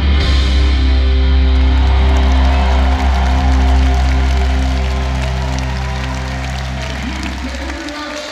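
A live rock band holds the final sustained chord of a song over a deep bass drone, ending the song. The chord slowly fades and cuts off near the end, while crowd cheering and clapping come up underneath.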